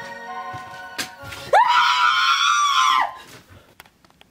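A woman's high-pitched scream that shoots up sharply and is held for about a second and a half before breaking off, following a short stretch of music.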